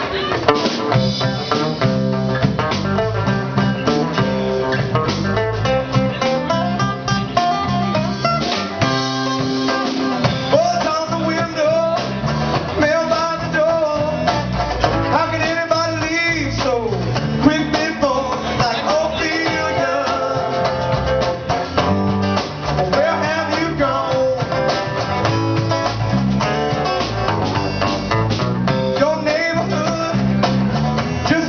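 Live band playing with electric and acoustic guitars over a drum kit, at a steady beat.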